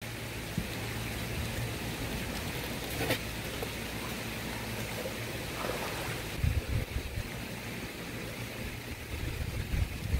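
Steady rush of running water from the pond's stream. Low thuds come about six and a half seconds in and again near the end as a person wades barefoot into the shallow pond.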